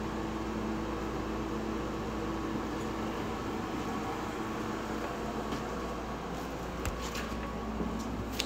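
Window air conditioner running: a steady hum with a faint low tone underneath.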